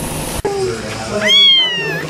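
A kitten meows once, high-pitched and loud, rising sharply and then sliding down in pitch over most of a second in the latter half.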